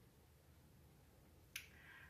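Near silence, then about one and a half seconds in a single sharp mouth click followed by a short soft in-breath, as a woman parts her lips and inhales just before speaking.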